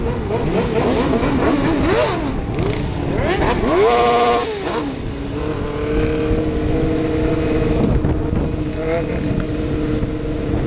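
Several sportbike and dirt-bike engines revving up and down in a group, with one loud rev climbing and held high about four seconds in before dropping away. After that one engine runs at a steady speed.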